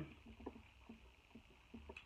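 Near silence: faint, scattered soft clicks of eating king crab legs over a low hum.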